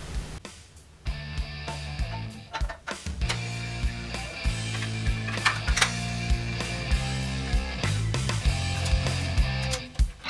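Background rock music with guitar and a steady beat, coming in about a second in.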